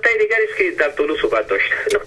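Speech only: a caller talking over a telephone line into the broadcast, the voice thin and tinny.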